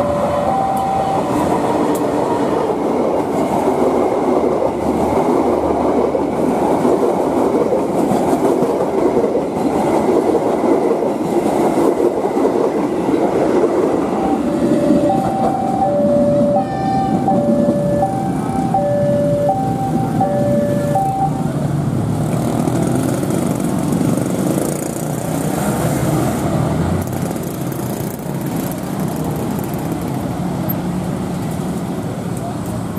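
Diesel locomotive and passenger coaches rolling past, a steady rumble of wheels on rail throughout. About halfway through, a level-crossing warning alarm sounds for several seconds, two tones alternating back and forth, and a similar two-tone alarm is heard at the very start.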